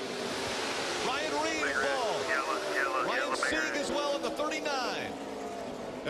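Television race audio of a stock-car crash: a steady roar of race-car engines and crowd noise, with excited voices shouting over it.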